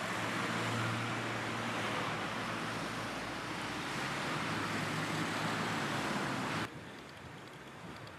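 Street traffic noise at night: a steady rushing hiss of passing cars that cuts off suddenly near the end, leaving a fainter hiss.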